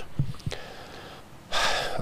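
A man's sharp, audible intake of breath through the mouth, starting about one and a half seconds in, just before he speaks. A few faint mouth clicks come before it.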